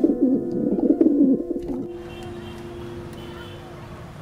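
A pigeon cooing in a bubbling, wavering run that stops about two seconds in, over a held music note that slowly fades.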